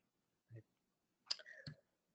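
Near silence with two short, faint clicks close together about a second and a half in.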